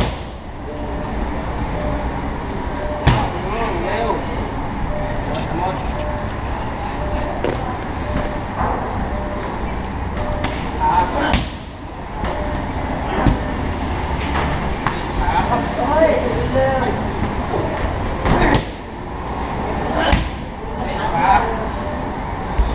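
Kicks and punches landing on Muay Thai pads, a sharp smack every few seconds, over a steady low traffic rumble.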